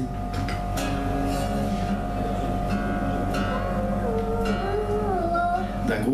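Steel-string acoustic guitar being retuned: strings ring while a tuning peg is turned, so their pitch slides down and up in several glides, with one note held steady underneath. The guitar is being detuned to an altered tuning.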